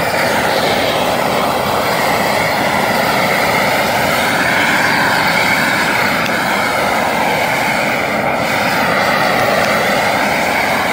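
Propane tiger torch running at full flame: a loud, steady rushing hiss whose tone sweeps slowly up and down as the flame is moved about.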